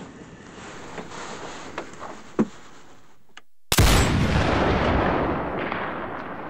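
Quiet clicks and rustling of hands handling gear, then, after a brief dead silence, a sudden loud gunshot boom just past the middle that rolls away slowly over about two seconds.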